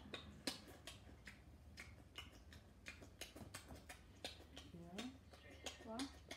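Open-mouthed chewing with wet lip smacks: irregular sharp clicks, two or three a second. A low voice speaks briefly near the end.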